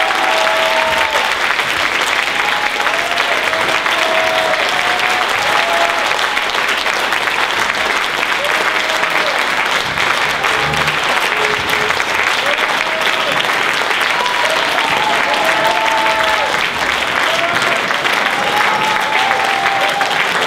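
Audience applauding steadily, with short cheers and whoops heard over the clapping.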